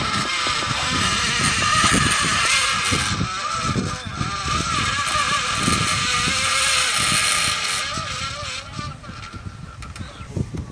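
A motor drives the rescue hoist's winch with a steady whine that wavers in pitch, paying out rope to lower the stretcher. It eases off about eight seconds in, and there are a few low thumps from handling.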